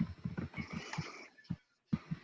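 Rapid keyboard typing over a video-call microphone, with a brief higher-pitched sound about half a second in lasting about half a second.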